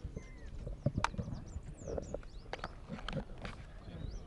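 Handheld press microphones being jostled: scattered short clicks and knocks, a few each second, with faint high chirps of birds.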